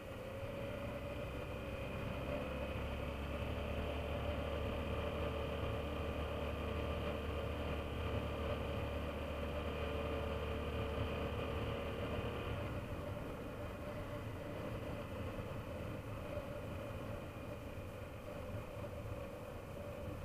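BMW F650GS Dakar motorcycle's single-cylinder engine running steadily while riding along, with a steady note that fades back about two-thirds of the way through.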